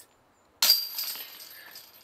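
A disc golf putt strikes the hanging metal chains of the basket: a sudden crash and jingle of chains about half a second in, ringing down over the next second and a half. The chains catch the disc for a made putt.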